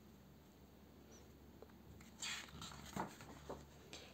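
Soft rustling of a paper picture-book page being turned and smoothed flat by hand, a few faint brushing sounds starting about halfway through after near silence.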